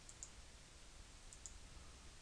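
Near silence: room tone, with two faint pairs of short, high clicks, about a quarter second in and again near a second and a half.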